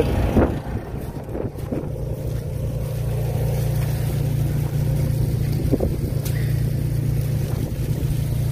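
A motor running steadily with an even low drone, from the rig pumping lake water into the leach-field manifold. There are a couple of soft knocks as the corrugated pipe is handled.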